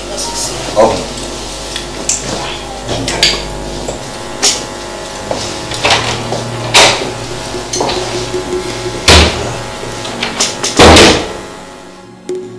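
A run of knocks and clicks from a door being handled, ending with a door shutting with a heavy thud about eleven seconds in.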